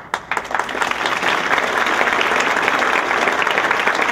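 Audience applauding: a few separate claps at the start that swell within about a second into full, steady applause.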